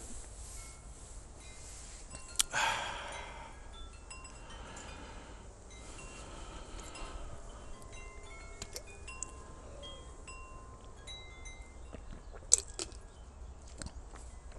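Wind chimes tinkling: scattered single notes at different pitches. A brief rush of noise comes about two and a half seconds in, and a sharp click near the end.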